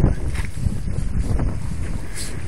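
Wind buffeting the microphone, a steady low rumble, with a brief thump right at the start.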